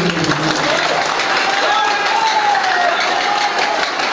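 A man's voice over a microphone trails off, and an audience applauds in steady clapping, with a single voice sounding faintly over the applause.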